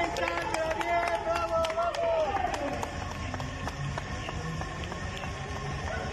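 Spectators cheering runners on: a voice calling out in long drawn-out shouts over quick, regular clapping for about two seconds, then quieter crowd noise.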